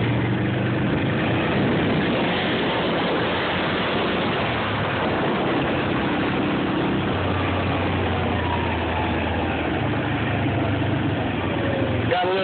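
Quad (ATV) engine running at a steady pace while riding along a dirt lane, under a dense rushing noise of wind and tyres. The engine note stays at one pitch, fading back a little in the middle and coming up louder again about seven seconds in.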